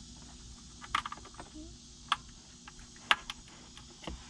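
Sharp plastic clicks and taps of a wiring-harness connector being handled and pushed into the input terminal of a Kicker Hideaway under-seat subwoofer, a few separate clicks over a faint low hum, the loudest just after three seconds in.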